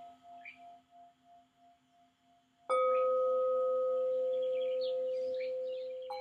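Metal singing bowls struck with a stick striker: the ring of one bowl pulses as it fades, then about two and a half seconds in another bowl is struck and rings out with a clear, layered tone that dies away slowly.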